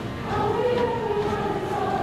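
Middle school choir singing, with voices holding sustained notes that glide between pitches.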